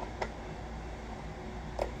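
Quiet room tone with two faint, short clicks, one just after the start and one near the end, from hands handling a PVC cosplay mask and its snap-in resin lightning-bolt pieces.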